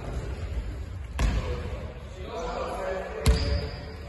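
Basketballs bouncing on a hardwood gym floor: scattered thuds, the loudest a little after three seconds in, with voices in the background.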